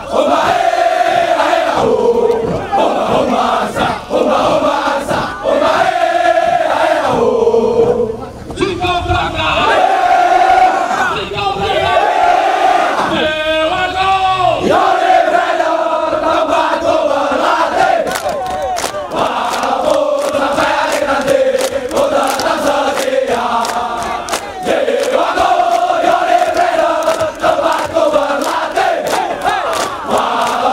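A large group of soldiers chanting and shouting a battalion yell in unison, loud voices rising and falling in a sung cadence with brief breaks. From about halfway, sharp rhythmic beats join the chant.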